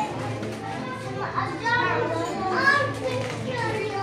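Young children's voices chattering and calling out in a room, several at once, in short high-pitched exclamations.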